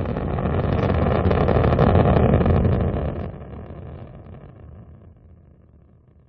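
Rocket engine burn sound effect: a deep rumble that swells for about two seconds, then fades away over the last few seconds as the spacecraft moves off.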